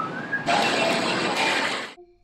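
Steady rushing noise at an airport terminal entrance, louder from about half a second in, with a few faint thin tones in it; it cuts off suddenly near the end.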